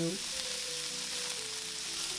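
Diced onion, peas, carrots and char siu sizzling in a hot wok over high heat as a wooden spatula stir-fries them.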